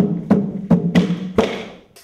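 Berimbaus, the wooden musical bows of capoeira, struck with sticks in a rhythm of about five strikes, each a sharp hit that rings briefly at a low pitch, fading out near the end.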